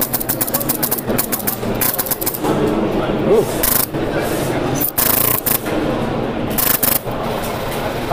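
Nexxus HPA airsoft engine cycling in short bursts of rapid sharp clicks, about half a dozen bursts, over the steady din of a busy hall.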